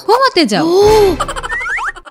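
A short vocal sound, then a cartoon-style sound effect: a whoosh carrying a swooping tone, followed by quick rising whistle-like slides near the end.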